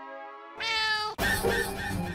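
A single cat meow lasting a little over half a second, about halfway through, set between a held background-music chord and a music cue with a steady beat that starts right after it.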